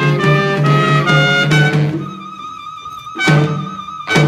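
A school wind ensemble of saxophones, trumpets and flute playing. For about two seconds the band plays busily over a repeated low note. Then it drops out, leaving one high note held with a wavering pitch, and the full band comes back in with a loud accented chord near the end.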